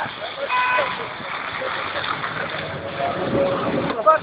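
Tram running close by with a steady rumble, with a short high-pitched beep about half a second in and people talking over it.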